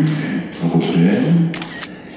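A man speaking into a microphone, then a quick run of several camera shutter clicks near the end.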